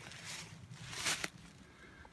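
Footsteps crunching through dry fallen leaves, two steps about a second apart.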